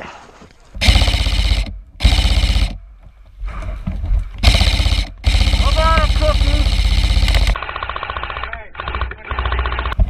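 Airsoft electric rifles (AEGs) firing full-auto bursts: about four short bursts and one long one of about two seconds near the middle, each a fast, even chatter of shots. Near the end comes a quieter, duller stretch of rapid fire.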